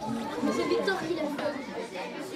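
Background chatter of several children talking at once, softer than the speech around it.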